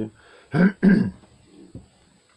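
A man clearing his throat: two quick rough rasps close together, about half a second in.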